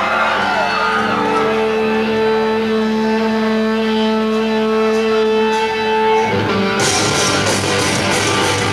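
Live rock band opening a song: an electric guitar holds a steady ringing note, then drums, cymbals and the full band come in loud about six to seven seconds in.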